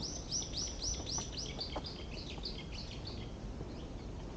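A songbird singing among the trees: a run of quick, high, down-sweeping notes, about four a second, that breaks into a lower twitter and stops a little after three seconds in.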